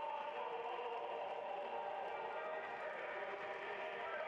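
Faint, steady background of a football crowd: distant spectators' voices blending into a low murmur, with no single loud event.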